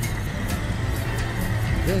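An inflatable rescue boat's outboard motor running steadily, under background music.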